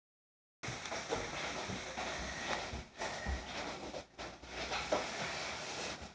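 Steady room hiss with a few faint clicks and light knocks, starting abruptly just after the opening silence.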